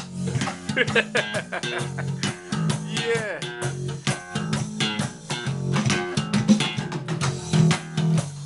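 Electric bass guitar played slap style: low notes under a quick run of sharp slapped and popped attacks, with a pitch slide down about three seconds in.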